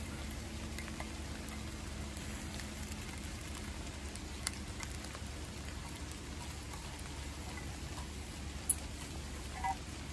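Bluegill fillets sizzling in oil in a small metal pot over a camp stove, a steady hiss. A few sharp clicks of metal tongs against the pot.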